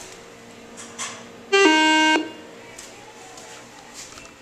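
Schindler elevator's low-pitched arrival chime sounding once, a single electronic tone about half a second long, about a second and a half in.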